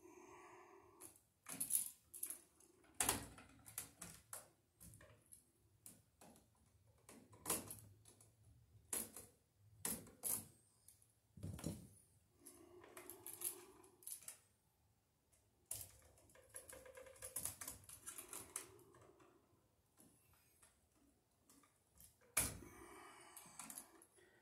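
Irregular sharp clicks and light clatter of hands and a hand tool working stiff electrical wires into a plastic electrical box, pushing and bending the ground wire into place.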